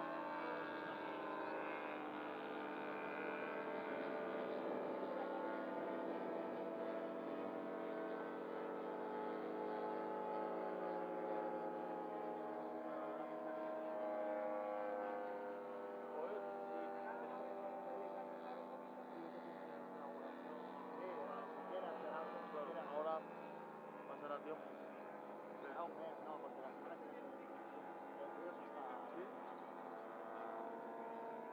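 Several radio-controlled model aircraft engines droning overhead, their overlapping tones drifting up and down in pitch as the planes turn and pass. The sound grows somewhat fainter after about fifteen seconds.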